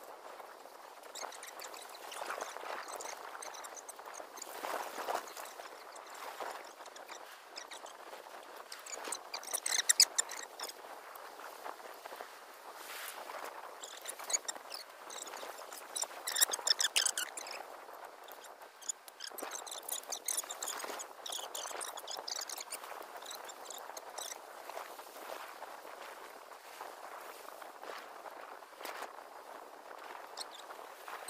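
Rustling and crackling of cut leafy branches and footsteps through brush cuttings, with a few louder bursts of crackling leaves about a third and halfway through.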